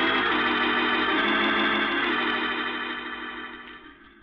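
Organ music bridge between scenes of a radio drama: held chords that shift once partway through, then fade away.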